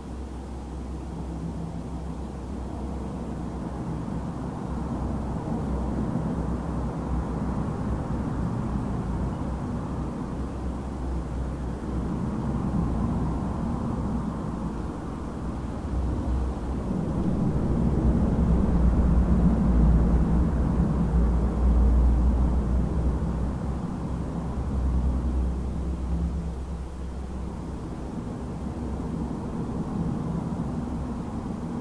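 Low, steady rumble of ambient noise that slowly swells to its loudest a little past the middle and then eases off again.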